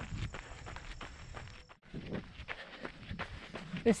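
Running footsteps crunching on a gravel trail in a steady stride rhythm, heard close to a handheld camera. The sound cuts out briefly just before halfway, then the strides go on.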